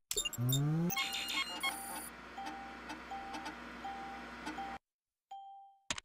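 Cartoon computer starting up: a rising power-up tone, then a string of clicks and short beeps over a steady hum. Near the end comes a single bell-like ding, the Windows 95 'Ding' sound.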